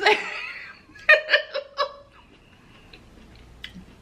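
A woman laughing: a short run of about five giggles about a second in, after a spoken word at the start, then quiet.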